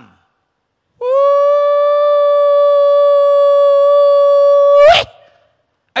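One long, steady blast on a horn, held for about four seconds on a single note and ending in a quick upward squeal.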